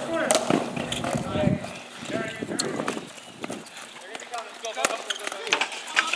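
Ball hockey play: scattered sharp clacks of sticks striking each other and the ball on a plastic tile court, mixed with players' shouting voices.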